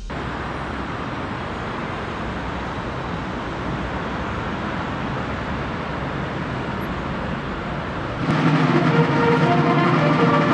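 Steady outdoor street ambience: a constant rush of traffic noise. About eight seconds in it changes to a military band playing, with drums.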